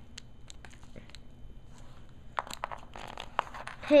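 Small clear plastic parts bag crinkling and crackling in the fingers, with scattered light clicks that grow denser toward the end.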